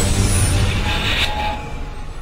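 Intro sound effect: a deep, engine-like rumble with a hiss that swells about a second in and then fades away.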